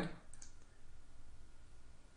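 A couple of faint computer mouse clicks about half a second in, against quiet room tone.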